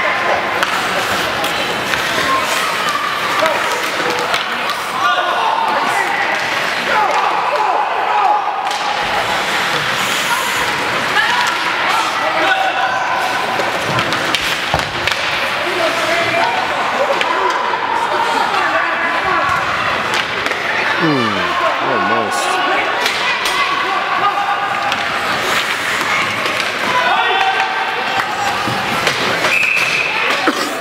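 Spectators' and players' voices calling out across an indoor ice rink during hockey play, with occasional sharp knocks of puck and sticks against the boards.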